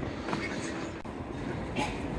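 Steady low rumbling noise with a few faint clicks, the sound of moving through a busy airport terminal.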